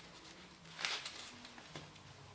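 Mostly quiet, with one brief faint scuff a little under a second in as gloved hands push a brass Lead-Loc fitting onto a lead pipe.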